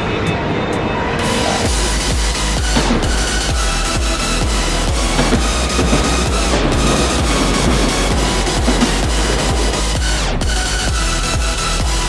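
Background electronic dance music with a heavy, steady bass beat; the bass comes in about two seconds in.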